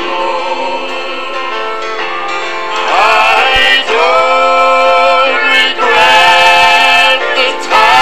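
Southern gospel song with band accompaniment: a softer stretch, then from about three seconds in, long, loud held vocal notes with vibrato in several phrases with short breaks between them.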